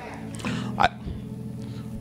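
A soft, sustained electronic keyboard chord held steadily under a quiet room, with one short vocal sound a little under a second in.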